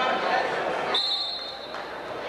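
Gym crowd chatter, then about halfway through one short, steady, high whistle blast lasting under a second, typical of a referee's whistle on the mat.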